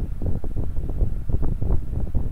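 Low, irregular rumbling noise on the recording microphone, with a rapid patter of soft thumps, like wind or handling noise on the mic.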